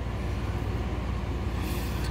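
Steady low mechanical hum with a fast, even pulse.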